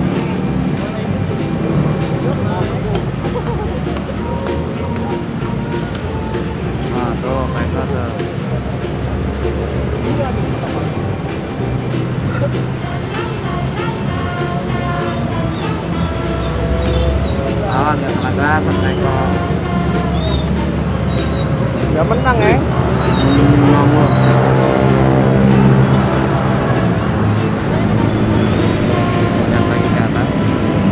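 Music with a singing voice, loud and steady, the voice wavering in pitch at times.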